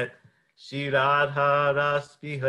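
A man's voice singing a long, held, slightly wavering note of a devotional chant melody, starting about three-quarters of a second in.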